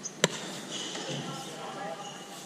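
A cricket bat striking the ball once: a single sharp crack, followed by players' voices calling out.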